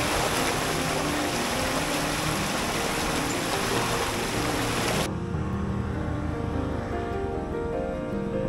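Water rushing over a small concrete weir in an irrigation channel, a steady hiss that cuts off suddenly about five seconds in. Background music plays throughout.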